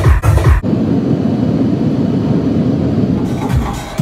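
Loud house music through a club sound system. About half a second in, the kick drum and deep bass drop out and the top end is cut, leaving a muffled wash. The highs come back near the end and the kick returns, as the DJ works the EQ on a rotary DJ mixer.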